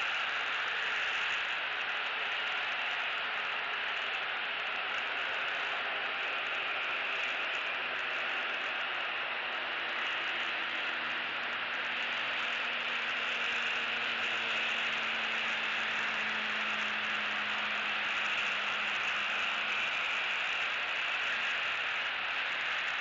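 Steady outdoor hiss on the nest camera's microphone, with a faint low engine drone that comes in about halfway through and fades again near the end.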